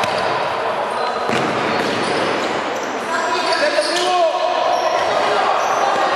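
Indoor futsal play: the ball being kicked and bouncing on the court, with players calling out, all echoing in a large sports hall.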